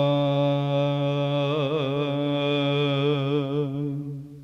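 Byzantine chant in the plagal fourth mode: male voices hold one long note, a lower drone (ison) sustained beneath the melody. The melody wavers in small ornaments about halfway through and again later, then dies away near the end.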